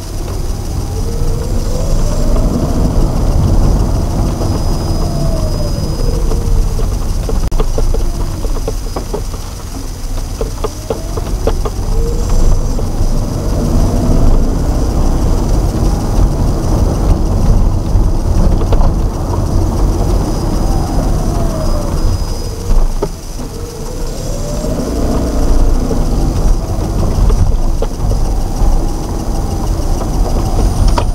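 Car interior driving noise: a steady low rumble of engine and tyres on the road, with a tone that climbs and falls back three times as the car speeds up and slows, and scattered small clicks and rattles.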